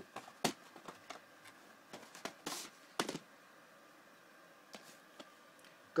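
VHS tapes and their plastic cases being handled: a few light clicks and knocks and a brief rustle over the first three seconds or so.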